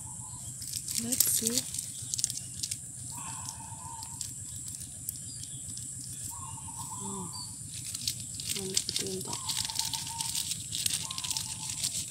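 Thin plastic bags crinkling and rustling in the hands as they are wrapped around Euphorbia flower heads, bagging them to catch the seeds before the capsules burst open.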